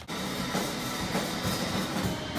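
Live rock music from a two-piece band: electric guitar and drum kit playing together, with the drums keeping a steady beat.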